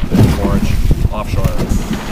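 A man talking on a boat at sea, his voice over a steady low rumble of wind on the microphone and the boat.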